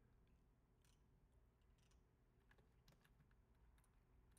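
Near silence: faint room tone with a few soft, scattered clicks of a computer keyboard and mouse.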